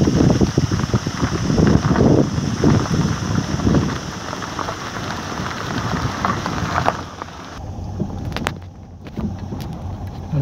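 Car driving along a rough dirt track, its tyres crunching and rumbling over gravel and stones. The noise eases about seven seconds in.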